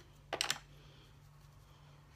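A brief plastic click about a third of a second in, from handling a makeup palette as a brush is taken to the eyeshadow. Otherwise quiet, with a faint steady low hum.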